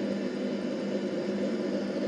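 Steady hum and hiss of background noise coming through an open microphone on an online voice call, between turns of speech.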